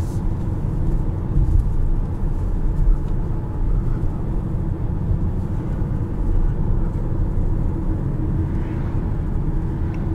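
Cabin noise inside a 2021 Mazda CX-5 with the 2.5-litre turbo four-cylinder, driving on a road: a steady low rumble of tyres and engine.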